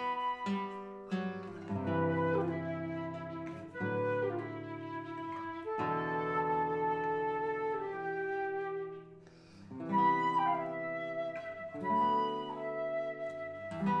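Concert flute playing a melody over a nylon-string classical guitar. The music thins to a brief hush about nine seconds in, then both come back in.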